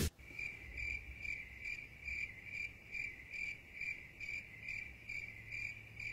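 Cricket chirping: short, evenly spaced chirps, a little over two a second, the comedic 'crickets' sound effect for an awkward silence.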